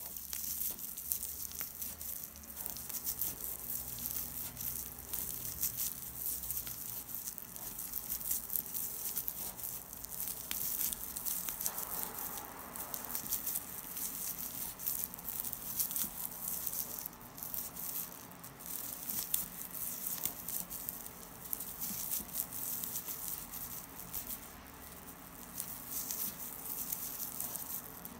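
Shiny tape yarn rustling and crinkling steadily with many small crackles and clicks as a metal crochet hook works single crochet stitches through it and the stiff crocheted fabric is handled.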